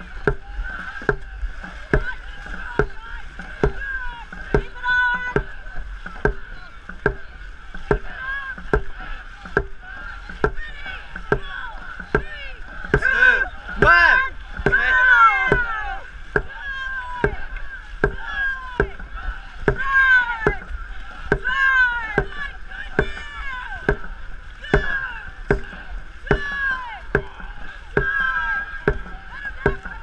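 Dragon boat drum beaten in a steady race rhythm, about four beats every three seconds, setting the paddlers' stroke. Shouted calls ride over the beats, loudest around the middle, with paddles splashing through the water.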